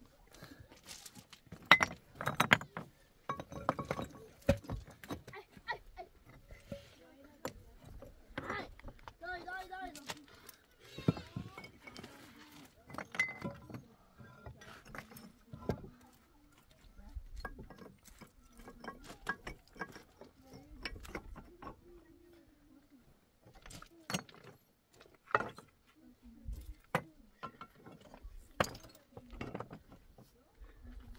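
Flat stones knocking and clinking against one another as they are set by hand into a dry-stacked stone wall. The sharp knocks come irregularly, a few seconds apart.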